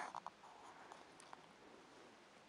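Faint scratching of a marker tip on paper as it draws a jagged leaf edge, with a few soft ticks; near silence overall.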